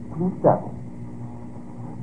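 A man's voice speaking one word, then a pause of about a second and a half that holds only a steady low hum and hiss from the old lecture recording.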